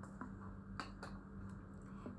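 Faint clicks and taps of a clear plastic water bottle being handled, two of them close together a little under a second in, over a steady low hum.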